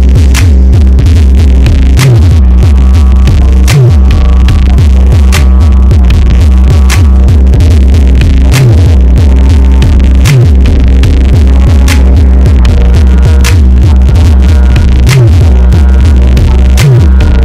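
Loud, heavily distorted noise music: a saturated, throbbing bass drone under dense crackling static and clicks, with a falling bass swoop about every second and a half.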